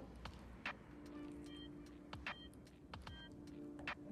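Faint soft ticks and taps of a knife splitting a peeled banana lengthwise, over a steady low hum that starts about a second in.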